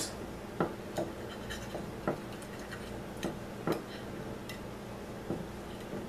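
Light, scattered crunches and crackles of crispy fried hash browns as fingers break off pieces and they are eaten, about seven small crunches spread over several seconds.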